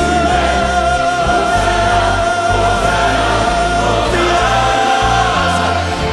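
Choir and orchestra performing a worship song, with one long held sung note that steps up in pitch about four seconds in, over a steady bass.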